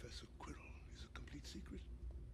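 Faint speech, quiet and whisper-like, low in the mix.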